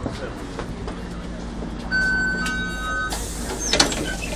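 Volvo B10MA articulated bus's diesel engine running with a steady low hum, heard from inside the passenger cabin. About two seconds in, a steady high electronic tone sounds for about a second, and a hiss follows.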